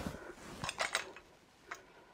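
Faint handling clicks and taps from a folding metal light-frame and its sliding hinge joiners as the frame is turned and the top bar is taken in hand: a few small ticks about halfway through and one short click near the end.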